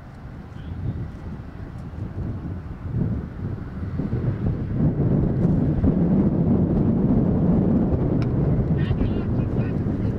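Wind buffeting the microphone as a low rumble that swells from about three seconds in and stays strong, with faint voices near the end.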